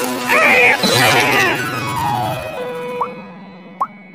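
Effects-processed cartoon soundtrack: music with a warped, pitch-bent voice, loudest in the first second and a half, then fading out, with two short rising chirps near the end.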